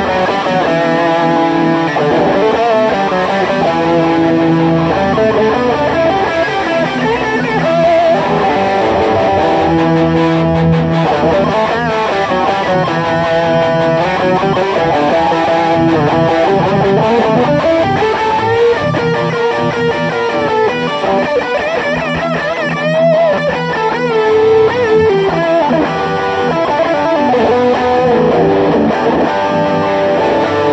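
Three amplified electric guitars, one of them a Gibson Les Paul, playing an instrumental metal piece together: melodic lead lines over held chords. The lead has bent and wavering notes in the second half.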